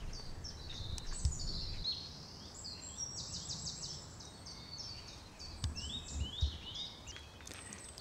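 Small songbirds singing and calling: a continuous run of short high chirps, down-slurred notes and quick trills, over a faint low rumble of background noise.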